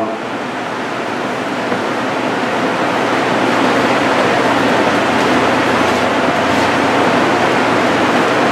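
A steady rushing noise that grows slowly louder over the first few seconds, then holds.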